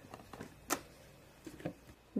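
Faint handling of the contents of a plastic play dough activity case: one sharper click a little under a second in and a few softer clicks near the end.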